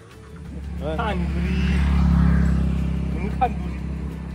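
A motor vehicle's engine running close by with a low, steady hum that swells to its loudest about two seconds in and then eases off. Two short voice sounds come over it, about a second in and near the end.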